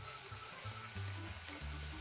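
Soft background music with steady low notes, over the faint sizzle of prawns frying in a pan.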